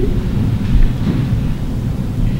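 A steady low rumble that swells briefly a little under a second in.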